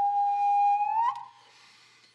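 Shakuhachi flute music: one long held note bends upward and breaks off about a second in, followed by near silence.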